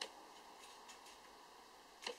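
Near silence with a few faint metal clicks and scrapes of a thin pointed tool turning the locking ring inside the end of a BSA Scorpion SE air cylinder, the sharpest click right at the start.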